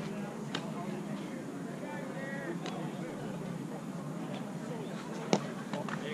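Faint, scattered voices of players talking across a softball field, with one sharp click about five seconds in.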